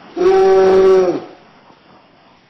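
A man's loud, drawn-out yell lasting about a second, its pitch dropping as it breaks off, as the cat he holds to his face attacks him.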